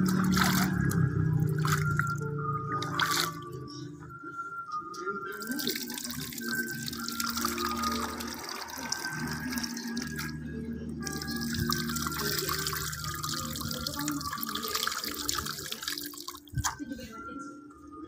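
Water sloshing and dripping in a bucket as hands stir and scoop wet cardamom pods, water running back off the palm, under background music with a melody.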